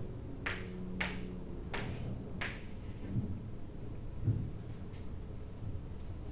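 Chalk strokes on a blackboard: four short, sharp scrapes in the first two and a half seconds, then a couple of soft low thumps, over a steady low room hum.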